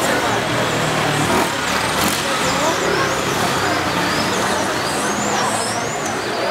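Outdoor street noise: a steady rumble of passing traffic with indistinct voices in the background.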